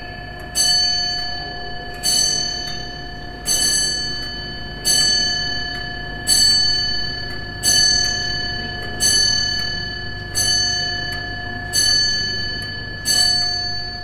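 A tall case clock striking on a bell: the same single note struck about ten times, one strike every second and a half or so, each ringing out and fading before the next.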